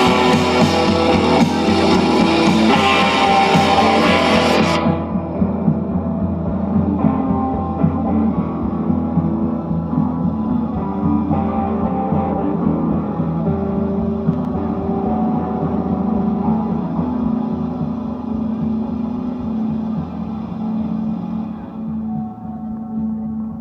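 Live dream-pop band playing with electric guitars and drums; about five seconds in, the cymbals and drums stop abruptly, leaving the guitars ringing on in a sustained drone that slowly fades.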